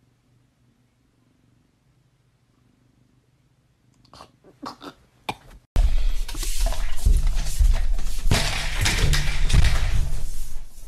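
Near silence with a faint low hum for about four seconds, then a few soft clicks, and about six seconds in a sudden, very loud, harsh, distorted noise that keeps going.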